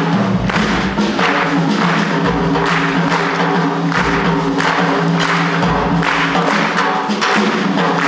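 Live jazz combo in a cha-cha groove carried by hand percussion, with shakers and hand claps over a held low chord. A deep drum hit comes about every one and a half to two seconds.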